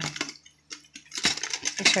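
Small metal tin (a prayer box) being handled: a run of light clicks and clatter from the lid and its contents.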